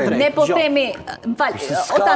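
Speech: several voices talking over one another in a heated discussion.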